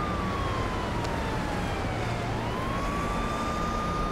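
A single high steady tone over a hiss. It slowly slides down in pitch, then sweeps quickly back up about two seconds in and holds.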